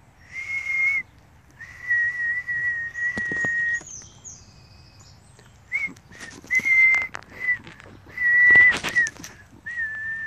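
A person whistling long, steady notes at nearly the same pitch, in several phrases with short gaps, each note wavering slightly and flicking up or down at its end. A few sharp clicks of handling noise come in between, the loudest near the end.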